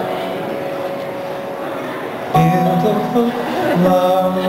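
Live band music: one note held steadily over room noise, then about two and a half seconds in the band comes in loudly with sustained chords and a moving line, entering again just before the end.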